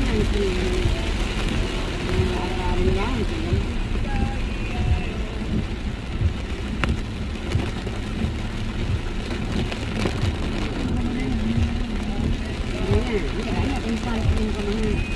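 Heavy rain on a moving car's roof and windshield, heard from inside the cabin as a steady wash over the car's engine and road noise. Faint voices come through near the start and again near the end.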